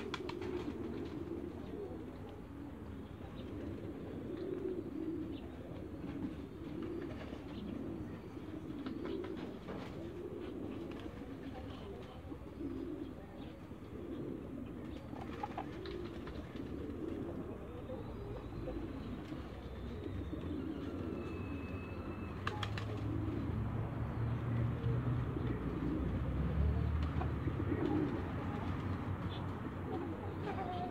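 Muscovy ducks making soft, low cooing calls again and again. A low rumble builds in the second half.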